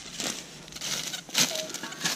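Footsteps crunching through dry leaf litter and twigs, with one sharper, louder crunch about a second and a half in.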